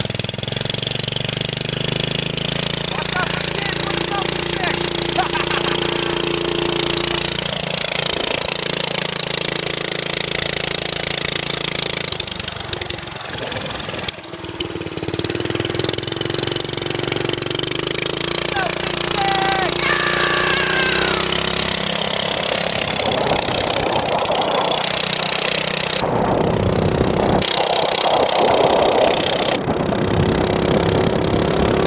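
Mini trike's small engine running while riding, its pitch rising and falling as it speeds up and slows, easing off briefly about twelve seconds in.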